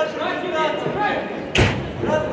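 One loud, sudden slam about a second and a half in, as the two boxers come together near the ropes. Voices calling out in a large hall run underneath.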